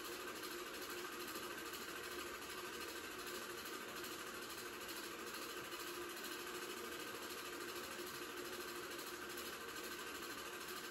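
Home movie projector running steadily, its motor and film mechanism making a continuous even whirr.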